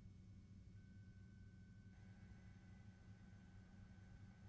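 Near silence: a faint low hum, with a thin steady high tone coming in about a second in.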